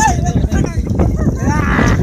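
Two shouted calls from people: a short falling one at the start and a longer rising-and-falling one near the end. Both sound over a steady low rumble.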